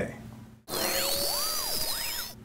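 Electronic transition sound effect: a hiss-like burst that cuts in suddenly about two-thirds of a second in, with several sweeping tones arching up and down through it and a high tone slowly rising.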